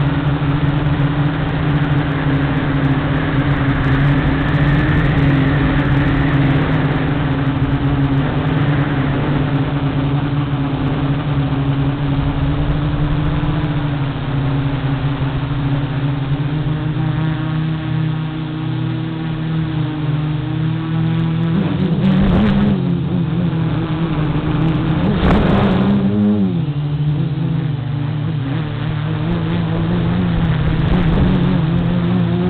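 Electric quadcopter's brushless motors and propellers humming steadily, heard from its onboard camera with some wind rush. The pitch swells and dips twice about three-quarters of the way in, as the throttle changes.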